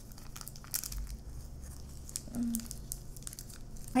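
Candy wrapper crinkling and rustling in the fingers as a chocolate sweet is unwrapped, in short, faint, scattered crackles.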